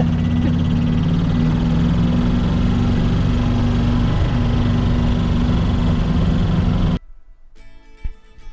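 The steady drone of a converted golf-cart rail cart's motor running along the track, mixed with background music. Both cut off suddenly about seven seconds in.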